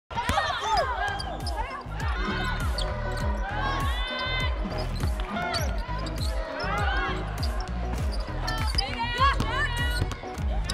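Basketball game sound: sneakers squeaking on the hardwood court in many short squeals and a ball bouncing, over background music with a steady bass line.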